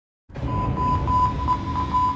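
Radio-show intro sound effect: a steady beep-like tone held over a rumbling wash of noise, starting about a third of a second in.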